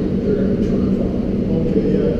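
A steady low rumble with a constant hum, and a man's voice speaking faintly over it.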